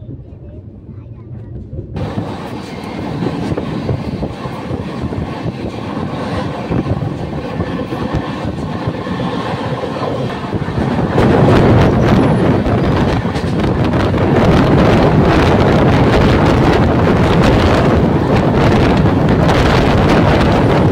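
Passenger train running at speed, heard from on board: a steady rumble of wheels on the rails mixed with rushing air, getting clearly louder about halfway through and staying loud.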